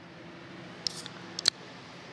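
A few sharp clicks against a faint steady low hum: a small cluster just under a second in, then a single louder click about a second and a half in.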